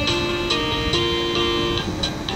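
Toy electronic keyboard playing single held notes, its voice set to a plucked-string sound, the pitch changing about every half second as a child presses one key after another.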